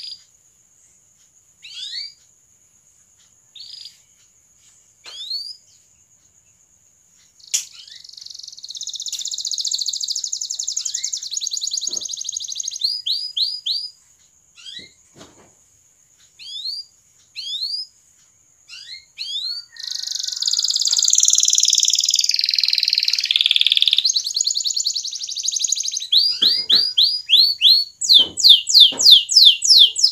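Domestic canary singing: single short rising chirps about every second and a half, a long fast rolling trill about eight seconds in, more scattered chirps, then a louder, longer rolling trill from about twenty seconds that breaks into rapid repeated rising notes near the end.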